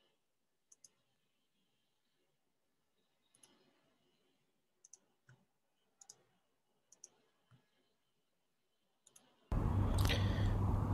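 Faint computer mouse clicks, each a quick double click of press and release, coming irregularly every second or so. Near the end, a loud steady hum and hiss cuts in abruptly.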